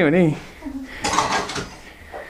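A brief clatter about a second in, lasting about half a second, like kitchenware or a drawer being handled.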